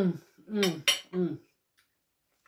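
A fork clinks once against dishware, sharp and bright, about a second in. Around it a woman's voice makes three short syllables, each falling in pitch.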